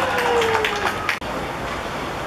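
Excited shouting from players and onlookers celebrating a goal, with one long falling shout and several sharp cracks among the voices. It cuts off abruptly a little over a second in, leaving a quieter steady outdoor background.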